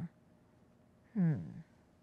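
A single short 'hmm' from a person's voice, falling in pitch, about a second in; otherwise faint room tone.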